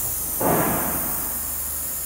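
Steady high hiss of compressed air from a Cummins PT injector leak tester bench, with a short dull knock that starts suddenly about half a second in and dies away quickly.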